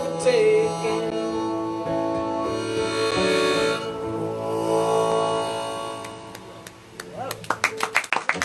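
Harmonica and acoustic guitar playing the closing bars of a folk song, with long held harmonica chords that fade out about six to seven seconds in. Audience clapping starts near the end.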